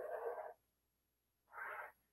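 Thick black felt-tip marker drawing on a sheet of paper: two short, faint scratchy strokes, one at the start and another about a second and a half in.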